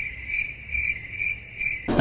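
Cricket chirping sound effect: a steady high chirp pulsing about two to three times a second, cut off suddenly near the end, over a low hum.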